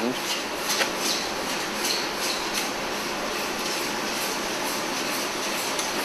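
Steady, even hiss of workshop background noise, with a few faint clicks in the first three seconds.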